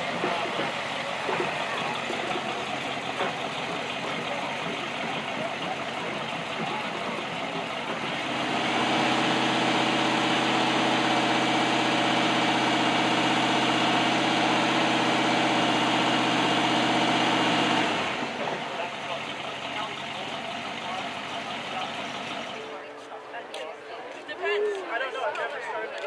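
Hot rod V8 engine idling steadily for about ten seconds, starting a third of the way in and shutting off suddenly. Crowd chatter goes on around it.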